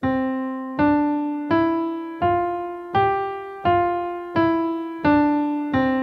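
Yamaha N1X hybrid digital piano playing a right-hand five-finger scale legato, C4 up to G4 and back down to C4. Nine single notes come about three-quarters of a second apart, each joined smoothly to the next, and the last one is left ringing.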